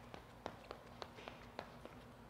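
Light footfalls of a sprinter doing a high-knee running drill on a rubber track: faint, quick, evenly spaced taps, about four or five a second.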